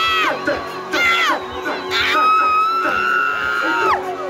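Live music through a stage PA with a high voice calling out over it: two short falling cries, then one long held cry of about two seconds that stops sharply near the end. A crowd cheers underneath.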